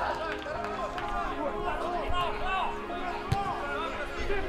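Overlapping, indistinct shouts and calls from players during a football match, with one sharp kick of the ball about three seconds in.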